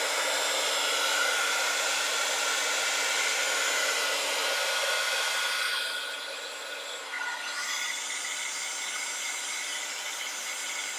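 American Crafts Zap craft heat tool blowing hot air in a steady whir, heat-setting the ink on a stamped envelope. The sound dips slightly and changes about six seconds in.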